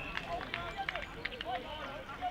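Indistinct shouts and calls from players on an outdoor rugby pitch, heard from a distance, with a few short sharp clicks among them.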